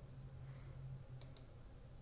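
Computer mouse button clicked twice in quick succession, faint, over a low steady hum.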